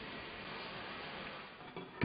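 Faint steady hiss with no distinct sound, dipping slightly near the end.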